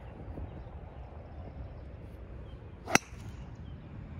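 Golf driver striking a teed-up ball: one sharp crack about three seconds in.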